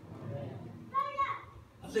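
A young child's brief high-pitched squeal about a second in, over a low murmur of speech.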